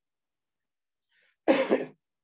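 A man coughs once into his fist, a single short cough about one and a half seconds in.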